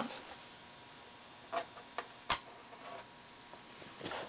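Faint steady high whine from a lamp over the very low hiss of a Pignose B100V tube amp idling almost silently on cathode bias. A few light clicks, then a sharper switch click a little over two seconds in as the lamp is switched off, and the whine stops.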